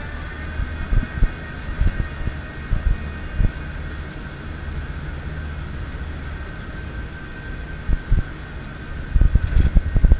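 Star Flyer swing tower ride running at speed: its drive gives a steady high whine over a low rumble, while wind buffets the microphone in irregular gusts that grow heavier near the end.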